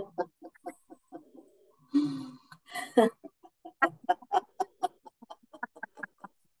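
A woman laughing loudly and deliberately in a laughter-yoga exercise. Broad open bursts of laughter come first, then a fast run of short "ha-ha-ha" pulses, about five a second, from about three and a half seconds in.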